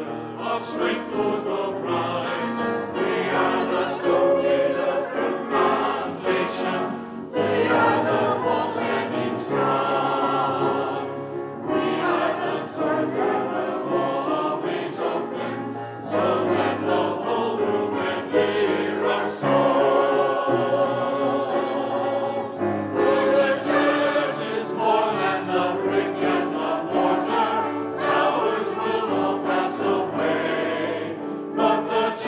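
Mixed choir of men's and women's voices singing in parts, accompanied by a grand piano, phrase after phrase with short breaths between them.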